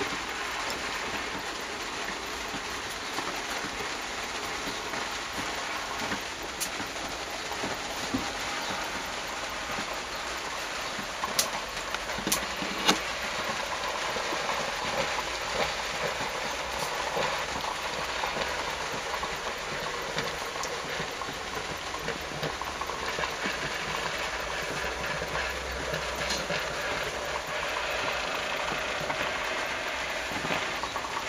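Small vertical steam engine of a steam launch running: a steady hiss and mechanical clatter, with a few sharp clicks about halfway through.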